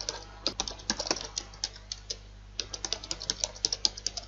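Typing on a computer keyboard: a quick run of key presses, with a short pause a little past the middle before the typing picks up again.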